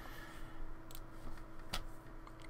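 A few sharp computer-mouse clicks, two of them clearer about a second in and near the end, over a faint steady hum.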